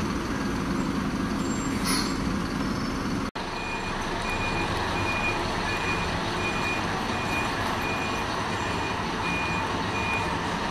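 Diesel bus and coach engines running, with a short air-brake hiss about two seconds in. After a brief dropout, a coach's reversing alarm beeps steadily about twice a second over the engine noise.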